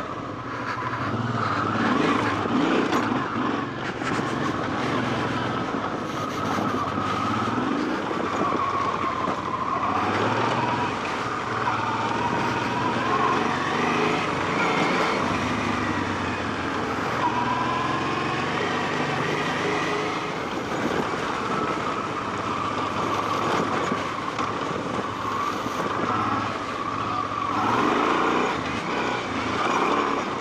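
Honda XL650V Transalp's V-twin engine running as the motorcycle is ridden along a rough dirt track, its note rising and falling with the throttle.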